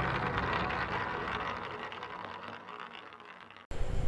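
Tail of a logo-intro music sting, fading steadily away over a few seconds, then cut off abruptly near the end as faint room tone takes over.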